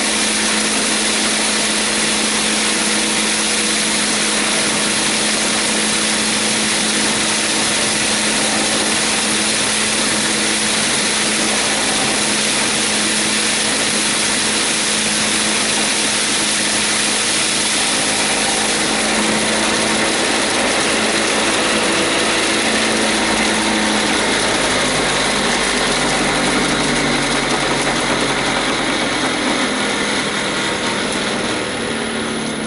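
Homemade impact rice huller running: the electric motor and belt-driven impeller give a steady hum under a continuous hiss of rice grains being thrown through the machine. The motor holds its speed under the load of the rice. In the last few seconds the hum changes pitch.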